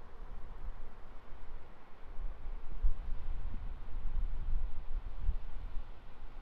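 Wind buffeting the microphone in uneven low gusts, heaviest in the second half, over the steady hiss of small waves breaking on the beach.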